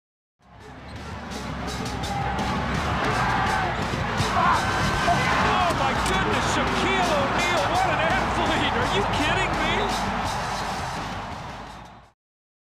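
Basketball game sound from an arena: a dense crowd din with the ball bouncing and short squeaks and clicks, fading in about half a second in and fading out at the end.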